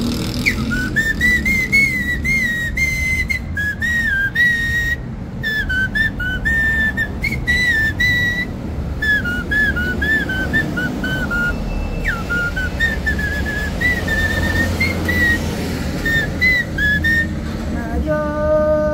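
A man whistling a slow melody, note after note with a slight waver in pitch.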